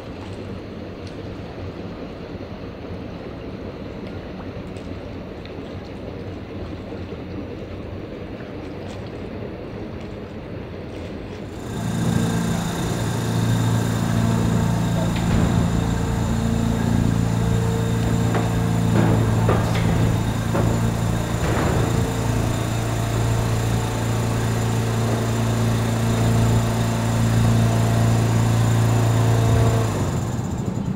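Lake water lapping against the shore with wind, then, after a cut about twelve seconds in, the steady electric hum of a Rigi railway electric railcar moving slowly over the depot tracks. The hum is several low tones held steady, with a few brief clicks in the middle.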